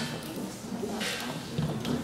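Quiet murmured voices with two short bursts of rustling hiss, the loudest about a second in; no piano is being played yet.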